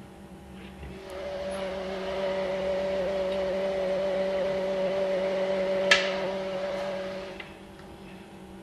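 A steady machine hum with two held tones fades in about a second in and dies away shortly before the end, with a single sharp click about six seconds in as the test-tube rack goes onto the incubator shelf.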